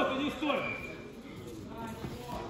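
A man's shouted voice trailing off in the first half-second, then the low murmur of a large sports hall.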